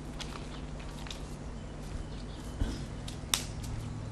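Faint, scattered crunching of footsteps on railway track ballast over a steady low background noise.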